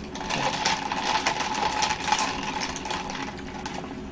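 Sucking an iced drink up a plastic straw: a rapid, rattling slurp lasting about three seconds that fades near the end.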